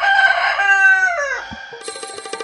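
A rooster crowing once: one long call that holds steady, then falls away in pitch at the end. Music starts just before the end.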